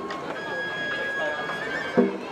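Festival hayashi music from a float: a bamboo flute (shinobue) holds a long high note for about a second over the murmur of a dense crowd. A short, loud shout comes right at the end.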